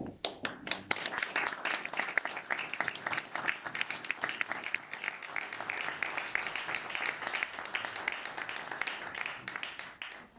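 A small group of people applauding: a few separate claps at first, then steady dense clapping that thins out near the end.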